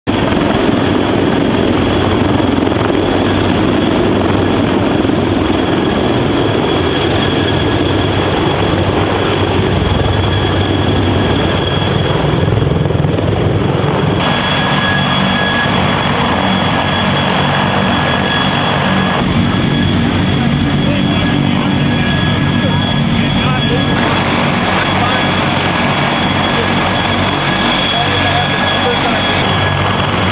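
CH-53 heavy-lift helicopter running, with the turbine engines' high steady whine over the rotor noise. The sound changes abruptly several times.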